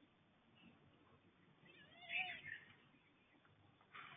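A single brief, high animal call, rising and falling in pitch, about halfway through, against faint background hiss.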